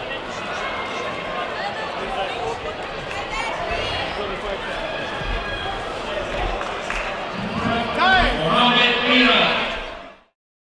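Many voices in a sports hall, with people talking and shouting from around the mat. The shouts grow louder and higher near the end, then the sound fades out.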